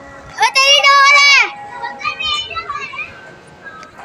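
A child's loud, high-pitched drawn-out shout, about a second long with a wavering pitch that drops at the end, followed by fainter children's voices.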